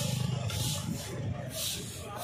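Stick brooms swishing and scraping over asphalt, one stroke about every second. A low droning hum fades out in the first half second.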